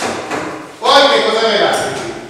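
Speech, with a single sharp tap at the very start.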